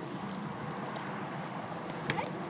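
Steady, even outdoor background noise with no distinct events.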